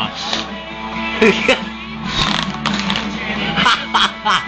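Guitar music playing, with short bursts of voices and laughter over it.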